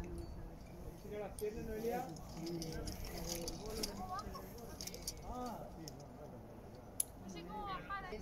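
Quiet voices talking, with scattered light metallic clinks of climbing gear such as carabiners and rope hardware, and one sharp click about seven seconds in.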